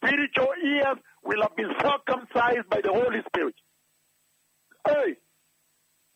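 Speech only: a man talking for about three and a half seconds, then a pause broken by one short word about five seconds in.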